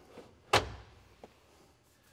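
Car seat adjuster latching in the cabin: one sharp clunk about half a second in, then a faint click.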